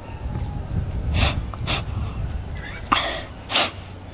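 A crying girl sniffling: several short, sharp sniffs spaced about half a second to a second apart.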